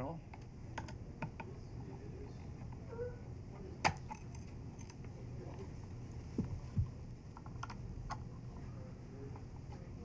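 Small clicks and taps of a screwdriver working the screws of a phono preamplifier's metal front panel, then knocks as the opened chassis is handled, with one sharp click about four seconds in and two knocks near seven seconds. A steady low hum runs underneath.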